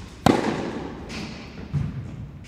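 A tennis ball struck hard by a racquet: a sharp pop about a quarter second in, with a ringing echo from the indoor court hall. A fainter click follows about a second later, and a dull thump comes near the end.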